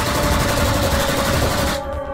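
A burst of machine-gun fire played as a sound effect over the music's sustained tone, lasting nearly two seconds and cutting off abruptly.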